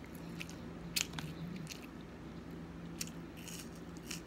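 A person chewing and smacking food close to the microphone, with a few sharp wet mouth clicks, the loudest about a second in and more around three seconds in. A steady low hum runs underneath.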